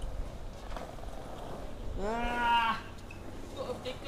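A man's drawn-out groan of pain, one vocal cry rising in pitch at its start, about two seconds in, from a skateboarder hurt on his bruised heel.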